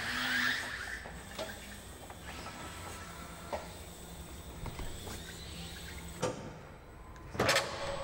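Electric STILL reach truck's hydraulics humming steadily as its forks slide into a pallet in the rack, with a brief hiss at the start and a sharp knock near the end.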